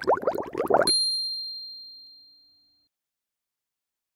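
KOCOWA logo sting sound effect: a quick run of rising chirps ends about a second in with one bright ding, which rings out and fades away over about two seconds.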